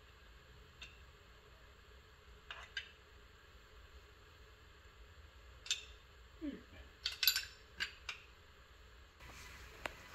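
Light metallic clicks and clinks from the small steel parking brake lever and a brake shoe of a drum brake being handled and fitted together: scattered single taps, with a quick cluster of clicks about seven seconds in.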